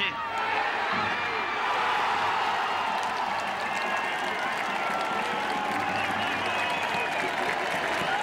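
Stadium crowd cheering and applauding a home goal, a steady mass of voices and clapping.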